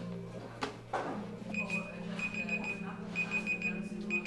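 An electronic timer beeping high and steady-pitched in about four short groups of rapid beeps, starting about a second and a half in. Before it come two sharp clanks of metal tongs against a plastic tub, over a steady low machine hum.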